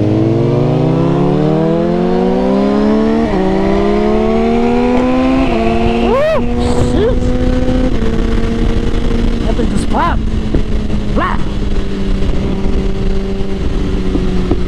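Suzuki GSX-R1000 inline-four motorcycle engine accelerating through the gears, heard from on the bike. Its pitch climbs, drops at upshifts about three and five and a half seconds in, then settles into a steady cruise.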